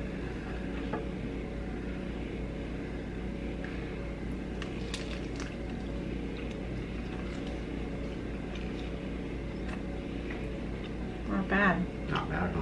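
Two people eating chicken wings: faint chewing and a few small mouth clicks over a steady low room hum. A voice comes in briefly near the end.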